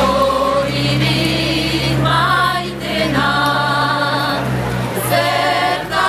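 Four women singing a cappella in several-part harmony, a Souletin Basque song with held notes moving together phrase by phrase, over a steady low hum.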